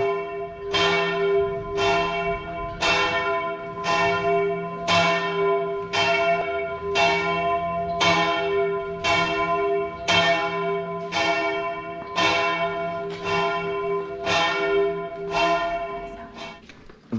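Church bell tolling steadily, struck about once a second, each stroke ringing on into the next.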